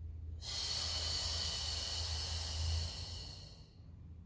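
A woman's long exhale, breathing out through the mouth on the effort of a Pilates chest lift as the head and chest curl up. It starts about half a second in and lasts about three seconds.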